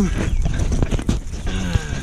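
Tomato leaves and stems rustling and scraping against the camera as it is pushed into the plants: a quick run of crackles over a low handling rumble.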